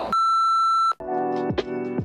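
A single steady electronic beep lasting just under a second, then outro music starts about a second in, with held keyboard-like notes and quick falling swoops.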